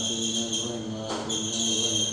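A man's voice chanting prayer recitation in long, steady held notes, broken briefly near the middle by a short breathy noise. A steady high-pitched chirring runs underneath.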